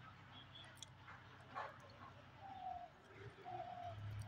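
A bird calling faintly: short, level notes repeating about once a second in the second half, over a low background hum.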